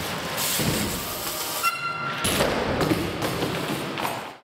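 BMX bike riding a wooden skatepark ramp: tyre noise and thuds, with a brief high squeal about two seconds in.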